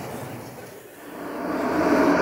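A rumbling, whoosh-like swell that builds over the second half, as the closing logo of a projected video comes up over the hall's speakers.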